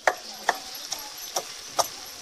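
A steady series of sharp ticks, evenly spaced at about two a second, over a faint steady hiss.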